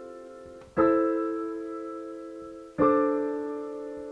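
Background piano music: slow, held chords, a new one struck about every two seconds and left to fade.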